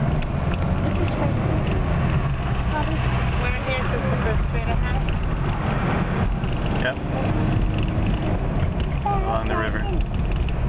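Steady low road rumble of engine and tyres inside a moving car's cabin, with faint voices in the background.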